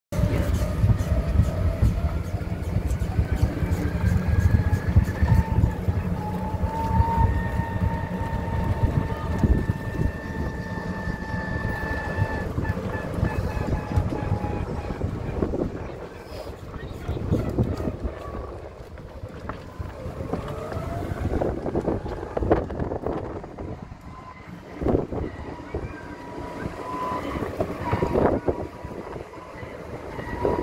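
A small passenger vehicle running slowly, heard from inside: a low rumble with a steady motor whine that rises slightly at first, louder for about the first half and quieter after.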